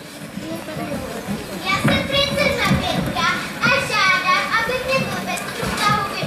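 Several children's voices talking and calling out on stage, starting about two seconds in, with music quietly underneath.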